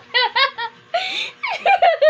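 A baby laughing: a quick run of short, high-pitched giggles with a breathy burst about halfway through.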